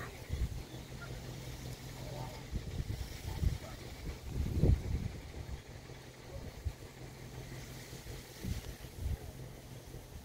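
Wind buffeting the phone's microphone: an uneven low rumble that swells and dips in gusts, with faint voices now and then.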